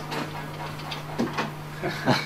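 Scattered light clicks, creaks and rattles from the room and its fittings as the building shakes in an earthquake, over a steady low hum.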